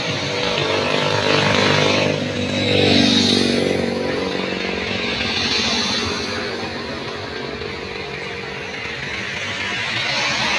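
Road traffic: motorcycles and cars passing close by one after another, their engines swelling and fading as each goes past, loudest in the first few seconds.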